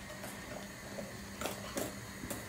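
A wire whisk beating thick cake batter in a metal saucepan, faint, with a few light clicks of the whisk against the pan.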